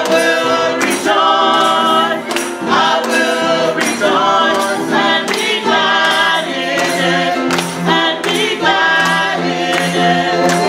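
Small gospel church choir singing in harmony over a steady percussive beat.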